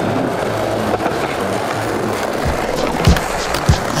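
Skateboard wheels rolling over concrete pavement, with a few sharp knocks in the second half as the board hits and lands, under hip-hop music.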